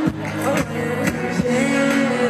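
Live pop music over a concert PA: a steady beat under sustained keyboard and bass tones, with a voice singing over it.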